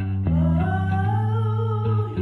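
A girl singing a long held note into a handheld microphone, sliding up at the start, over guitar and bass accompaniment.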